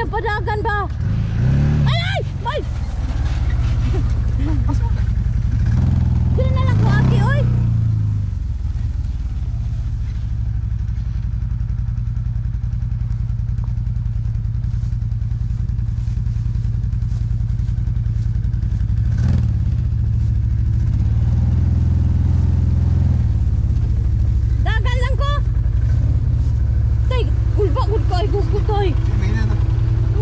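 Side-by-side UTV engine running with a steady low drone, its revs rising and falling a few times as it drives through grass. Voices talk briefly near the start and again in the last few seconds.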